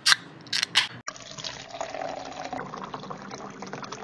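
A few short, loud bursts in the first second, then a sudden cut to a steady sound of liquid being poured, used as a sound effect over the title card.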